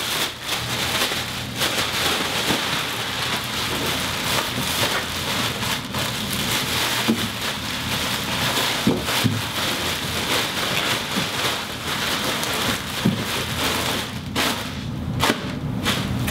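Black plastic garbage bags rustling and crinkling continuously as they are pulled over and pushed around a bulky load, thinning briefly near the end.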